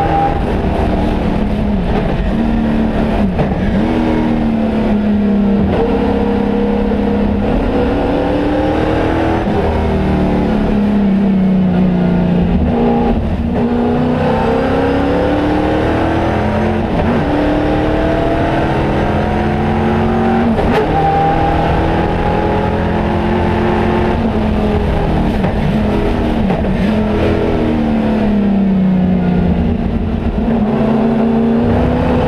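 Loud, hard-working V8 of a 1971 Pontiac Trans Am race car heard from inside its cabin at racing speed: the pitch climbs through each gear, then falls at gearshifts and braking, again and again.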